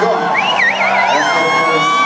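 A high vocal wail through the PA with a wide, wobbling vibrato, going into a long held high note that rises slightly near the end, over amplified acoustic guitars.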